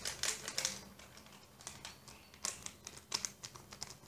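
Paper sachet being handled: short clusters of light clicks and rustles, in about four groups.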